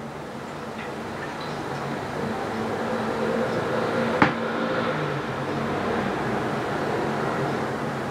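A steady low mechanical hum, like a fan or air conditioner, that grows slightly louder, with a single sharp click about four seconds in.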